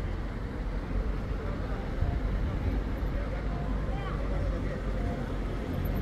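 Steady low rumble of street traffic and idling car engines, with faint, distant voices now and then.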